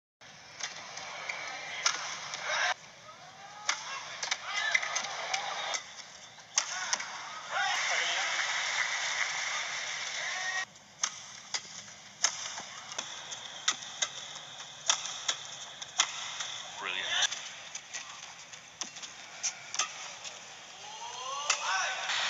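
Badminton rally: racket strikes on the shuttlecock, sharp and roughly a second apart, with shoes squeaking on the court mat and a steady murmur of the arena crowd underneath.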